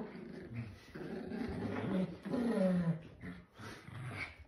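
Small dogs growling in play while tussling over a toy, a rough growl lasting about two seconds in the middle.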